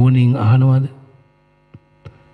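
A Buddhist monk's voice intoning Pali words in a drawn-out, chant-like delivery on one nearly steady pitch for about the first second, then a pause with a faint steady hum and a small click.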